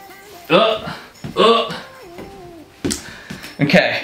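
A man's wordless vocal sounds: several short exclamations and one drawn-out, sliding hum. A single sharp click comes about three seconds in.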